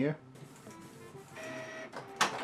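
Canon inkjet printer with refillable ink tanks starting a print on iron-on transfer paper: a mechanical whirr of the paper feed and print carriage that comes up about two-thirds of the way in.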